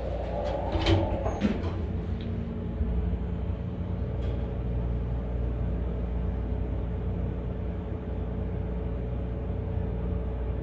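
Dover elevator's doors sliding shut about a second in with a couple of knocks, then the car running with a steady low hum and a held tone as it travels up from the lower level.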